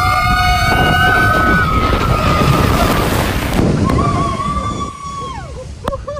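Riders screaming as a log flume boat plunges down a big drop, over rushing water and wind buffeting the microphone. One long held scream starts right at the drop, a second shorter one comes about four seconds in and trails off downward, then the rush dies down near the end.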